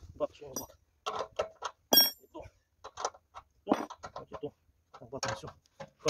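A metal hand tool clinking against the bolts of a petrol generator's steel frame as they are retightened, with one sharp metallic clink about two seconds in.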